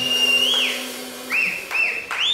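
Loud human whistling in approval as the band's song ends: one long high whistle that rises then drops away, followed about a second later by two short up-and-down whistles. A low note from the band rings on underneath and dies out partway through.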